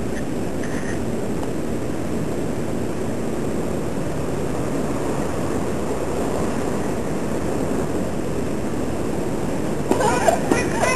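Steady low rumble of outdoor street ambience, even throughout with no distinct events.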